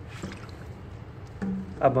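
Low, steady background hum with a faint brief hiss just after the start, then a man's voice begins speaking near the end.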